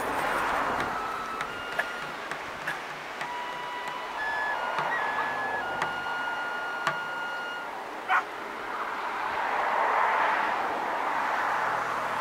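Seaside ambience: a steady hiss of surf and wind that swells near the end, with thin held whistle-like tones stepping between a few pitches through the middle and several sharp clicks, the loudest about eight seconds in.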